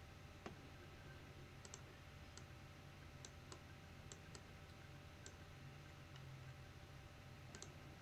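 Near silence with faint, scattered computer-mouse clicks, some in quick pairs, over a low steady hum.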